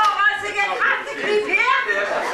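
Speech: a performer's high-pitched voice calling out in short phrases, its pitch sliding up and down.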